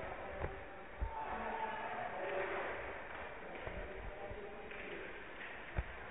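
Ice rink game sound from the stands: faint spectator chatter under a few sharp knocks from the play on the ice, about half a second in, at one second, and the sharpest near the end.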